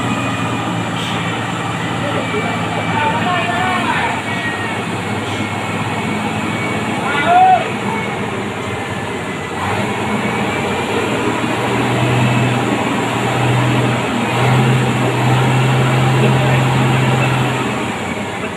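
Heavy three-axle truck's diesel engine pulling slowly up a steep hairpin bend, its low drone growing louder and steadier in the second half. Voices call out over it, with one loud shout about halfway through.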